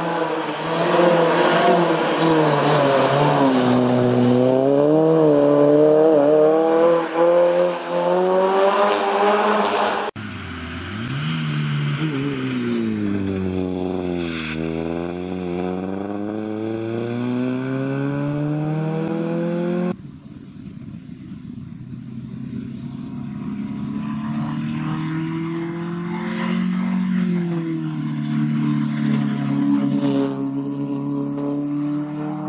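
Citroen C2 rally car engine revving hard through the gears, its pitch climbing and dropping with each gear change and lift. In the middle stretch the engine note sinks steadily, then climbs again as the car accelerates away. The sound changes abruptly twice.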